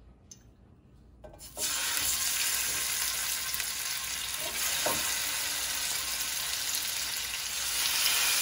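Marinated chicken pieces going into hot oil in a nonstick frying pan: a loud sizzle starts suddenly about a second and a half in and keeps up steadily as more pieces are laid in.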